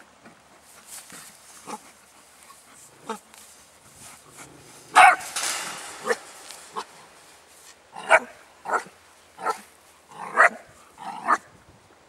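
An eight-week-old Belgian Tervuren shepherd puppy barking in short, sharp barks. A few come early, the loudest is about five seconds in, and a quick run of about six barks follows in the last four seconds.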